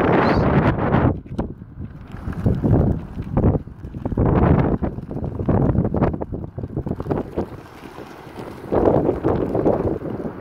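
Wind buffeting a phone's microphone outdoors: a low, uneven noise that swells and fades in gusts.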